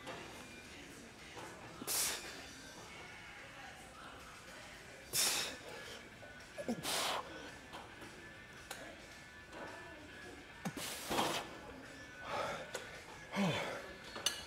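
A man's sharp, forceful exhales, four loud blown breaths a few seconds apart, from the effort of a heavy set of leg extensions. Faint background music runs underneath.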